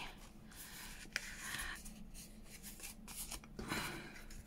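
Sheets of card-weight paper rubbing and sliding against each other as they are handled and squared up, in several short rustles with one sharp tap about a second in.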